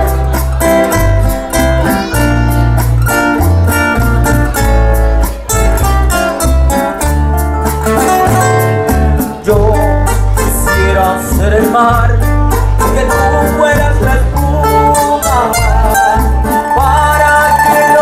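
Live trio music: acoustic guitars play an instrumental passage with a strong bass line, and a male voice starts singing about halfway through over the guitars.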